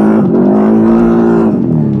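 CFMOTO CForce ATV engine under throttle. Its pitch climbs quickly at the start, holds steady, then drops near the end as the throttle eases.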